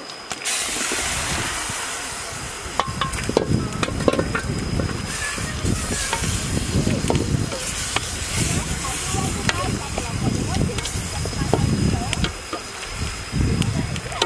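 Pork belly pieces tipped into a hot steel wok of seasoned liquid, setting off a sizzle about half a second in, then a metal spatula stirring the meat with repeated clicks and scrapes against the wok.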